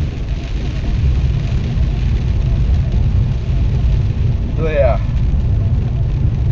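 Steady low rumble of a car driving on a rain-soaked road, heard from inside the cabin: engine and wet tyres, with rain noise above. A brief voice sound comes about five seconds in.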